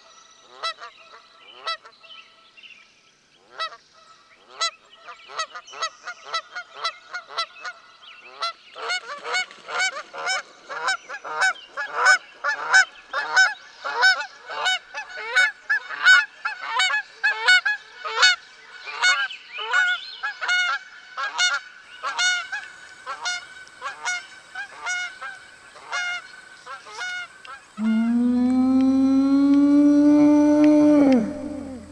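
Geese honking over and over, sparse at first, then faster and louder from about nine seconds in. Near the end a loud, long animal call cuts in, its pitch rising and then holding.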